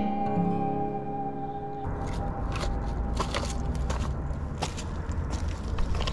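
Soft acoustic guitar background music for about the first two seconds, then a sudden cut to camera handling noise: a low rumble with rustling, scraping and clicking as the camera rubs against a jacket.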